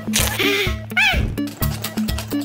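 Upbeat background music with a steady, evenly repeating bass beat. About half a second to a second in, a short cartoon-style sound effect glides up and then down in pitch over the music.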